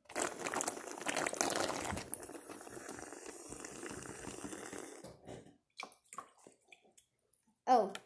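Juice gurgling through a plastic bendy straw as it is sucked up, a wet slurping noise, loudest for the first two seconds and stopping about five seconds in.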